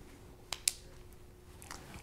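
Two quick snaps about half a second in, a moment apart, as the ribs inside a strain-relief boot click over the ribs at the back of a crimped LMR-400 coaxial connector, a sign the boot is seating.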